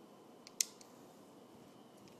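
A single sharp click about half a second in, with two faint ticks around it, over low room hiss.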